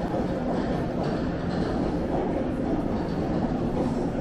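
Steady ambient noise of a busy airport concourse: an even low rumble of building and crowd noise with no clear voices standing out.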